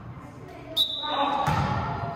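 A volleyball being played in a school gym: a sharp slap about a second in, then many children's voices shouting and cheering.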